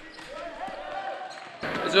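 A basketball bouncing on the floor of a sports hall, with distant voices faint in the background.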